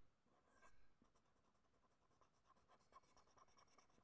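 Faint scratching of a black marker tip on paper, quick short back-and-forth strokes that fill in a small area.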